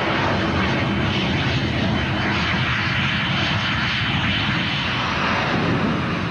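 Aircraft engine running: a steady rushing drone with a low hum beneath it.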